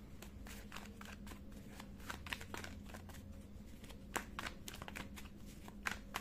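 A tarot card deck shuffled by hand. Quiet, irregular clicks and flicks of cards sliding against each other, several a second.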